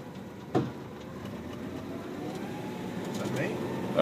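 Cab interior of an International TranStar under way, its Cummins Westport ISL G spark-ignited natural-gas engine running low and quiet. A faint whine rises in pitch and the sound grows gradually louder as the truck picks up speed. A single knock comes about half a second in.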